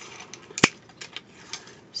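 Light clicks and taps from a small plastic tape dispenser being handled, with one sharper click a little past half a second in.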